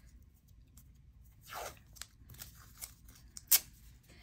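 Washi tape being peeled from its roll and torn by hand, with faint crackles and a soft peel sound about a second and a half in. A single sharp click comes near the end.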